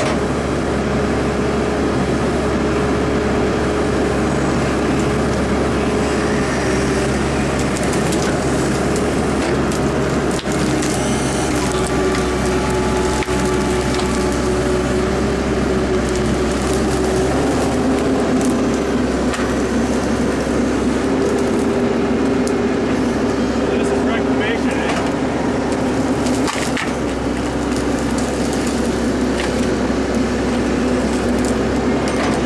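Excavator's diesel engine and hydraulics running steadily under load, a sustained hum that shifts lower in pitch a little past halfway, with occasional cracking and snapping of wood as the bucket pushes through logs and brush.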